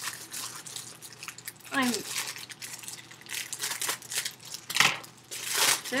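Packaging rustling and crinkling in irregular bursts as a parcel is handled and opened, loudest near the end.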